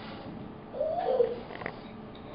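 A domestic cat meowing once, about a second in: a short call that rises and then falls in pitch, with a brief click just after it.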